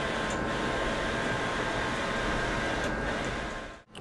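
TrafficJet wide-format inkjet printer running as it prints sign faces: a steady whir with a faint hum, which cuts off abruptly near the end.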